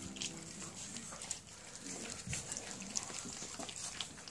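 A dog eating wet food from a stainless steel bowl: quick, irregular smacking and snuffling with small clicks.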